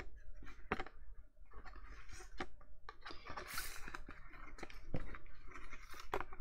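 Purple cardstock tubes being handled and moved across a table: scattered light taps and clicks of card, with a longer paper rustle about three and a half seconds in.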